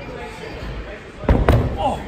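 Two heavy thuds about a second and a half in, from a person's feet and hands hitting the gym floor as he lands a raiz attempt, crashing down into a crouch.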